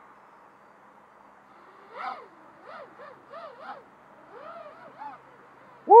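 Brushless motors of an Eachine Wizard X220 racing quadcopter on a 4S battery, revving in a series of short bursts as it takes off and flies. From about two seconds in, about seven quick whines each rise and fall in pitch.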